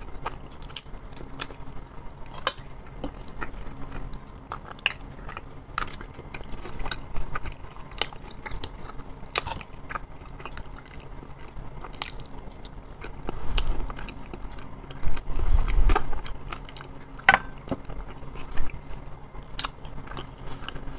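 A man chewing and eating baked potato and salad close to a clip-on microphone. Mouth and chewing sounds come with many scattered sharp clicks, over a faint steady low hum.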